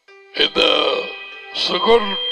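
A man's voice close to a headset microphone, starting abruptly about half a second in, with a faint steady tone underneath.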